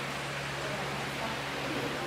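Steady hiss of indoor restaurant room noise, with a faint low hum running under it, like a fan or air-conditioning unit.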